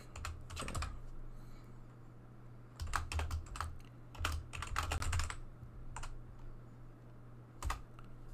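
Computer keyboard being typed on in short bursts of keystrokes with pauses between them, over a steady low hum.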